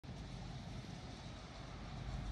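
Faint, steady outdoor background noise: an even hiss over a low rumble, with no distinct events.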